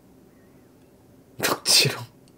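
A man's short burst of laughter near the microphone: two sharp, breathy outbursts about a second and a half in, the second trailing off in a falling voiced sound.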